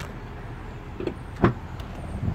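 A single sharp click about one and a half seconds in, as the rear liftgate latch of a 2016 Buick Enclave is released, over a low steady rumble.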